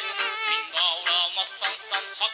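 Live Uzbek folk song: a male singer holds a wavering, ornamented vocal line over plucked tar strings and band accompaniment.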